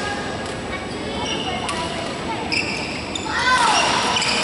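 Badminton rally in a large, echoing hall: rackets hitting the shuttlecock as sharp clicks about half a second and a second and three-quarters in, with a short squeal near the end.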